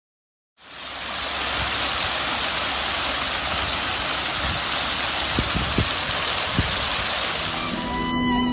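Ground-level fountain jets falling and splashing onto wet paving: a loud, steady rushing hiss that cuts in suddenly about half a second in, with a few faint low thumps partway through.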